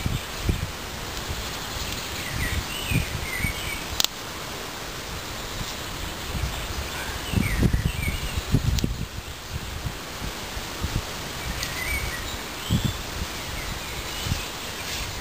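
Woodland ambience: a steady rustle of leaves and a noisy wash with irregular low rumbles. A few short bird chirps come in three brief clusters. Footsteps and brushing of leafy branches are heard from about the middle as a person walks up.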